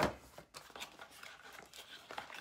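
Cardboard packaging being handled as a cable is pulled out of the box: a sharp knock at the start, then rustling and scraping.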